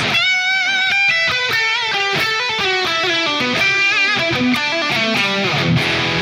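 Distorted electric guitar lead played through the McRocklin Suite's GAIN amp simulation: a run of sustained single notes with vibrato and quick note changes. The 125 Hz band is pushed up a few dB to thicken the higher notes.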